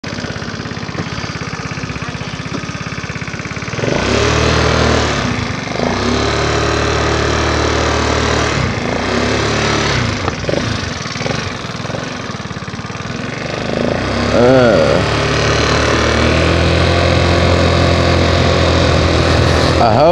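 GY6 150cc scooter's single-cylinder four-stroke engine idling, then revving up about four seconds in as the scooter pulls away. The engine note rises and falls with the throttle and is held higher as it rides off.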